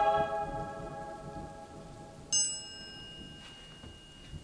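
A sustained, eerie score chord fades out. About two seconds in, a single high bell-like ding strikes and rings on, slowly dying away.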